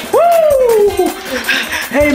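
A person's long wordless holler in a worship shout: one call that rises sharply and then slides down in pitch over about a second, with a shorter, fainter call later on.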